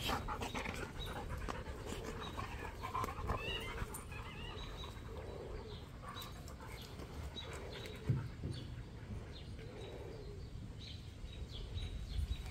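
Dogs playing and wrestling on dirt: panting and scuffling, with a thump about eight seconds in.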